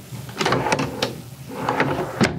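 Wooden cabinet drawers on metal slides being pulled open and pushed shut: a sliding rumble with several sharp clicks and knocks as the drawers hit their stops.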